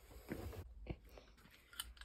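Faint crinkling and scraping of cardboard packaging as a Stanley multi-angle vice is pulled out of its box, with a couple of light clicks.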